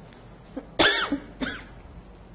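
A woman coughing twice: a loud cough a little under a second in, then a shorter, weaker one half a second later.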